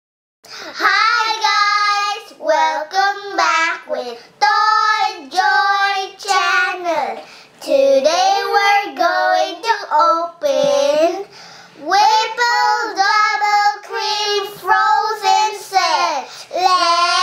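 Two young girls singing a song together, unaccompanied, in phrases of held notes with short pauses between them.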